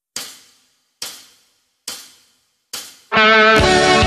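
Four hi-hat taps counting in the song, evenly spaced a little under a second apart, each ringing briefly. About three seconds in, the full band comes in loud with guitar.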